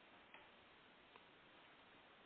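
Near silence: faint room hiss with two soft mouse clicks, one early and a fainter one about a second later.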